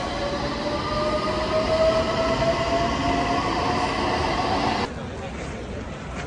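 Electric subway train's traction motors whining and rising steadily in pitch as the train accelerates out of the station, over the rumble of the cars. The sound cuts off suddenly near the end, leaving quieter outdoor ambience.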